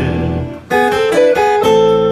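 Acoustic and electric guitars playing an instrumental passage between sung lines: after a brief dip, a chord is struck about two-thirds of a second in, followed by a few changing notes and another chord that rings on.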